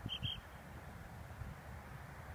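Wind buffeting the microphone as an uneven low rumble, with two short high-pitched chirps in quick succession near the start.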